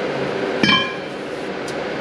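A steel rear axle shaft set down upright on its wheel flange on a concrete floor: one sharp metallic clank with a brief ring, about half a second in.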